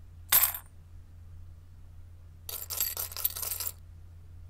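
A brief swish shortly after the start, then a quick clatter of metal coins clinking and jingling together for about a second, a little past halfway.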